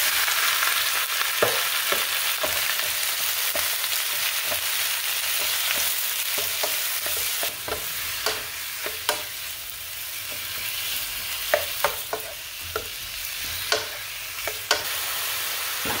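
Raw chicken pieces tipped into hot oil and garlic in a coated pan, sizzling loudly from the moment they land and easing a little over time. A wooden spatula stirs them, with scattered sharp taps against the pan.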